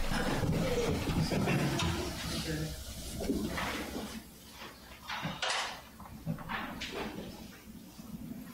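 A congregation settling into their seats: a low murmur of voices with rustling and shuffling that dies down after about four seconds into scattered small knocks and rustles.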